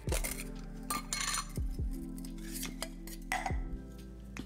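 Clear hard-plastic whisk case being handled and opened: a few short clicks and clattering rustles, near the start, about a second in and near the end, over soft background music.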